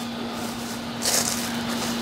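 A steady low hum under outdoor background noise, with a brief rustling hiss starting about a second in.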